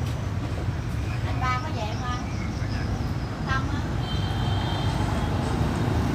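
Steady low rumble of street traffic going by. Brief snatches of background voices come about one and a half and three and a half seconds in.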